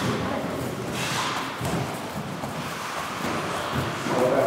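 Scattered dull thuds over a steady noisy background in a large, echoing indoor hall.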